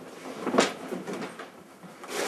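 Someone rummaging in a hallway coat closet: soft rustling and handling noises, with one sharp knock about half a second in.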